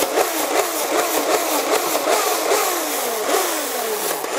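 Nerf Zombie Strike RevReaper toy blaster worked rapidly by its sliding handle, firing darts in quick succession. Its geared friction mechanism gives a train of falling whines, a few each second, with sharp clicks from the handle and darts.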